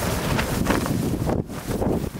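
Wind blowing across the microphone: a steady, dense rushing noise heaviest in the low end, easing briefly about one and a half seconds in.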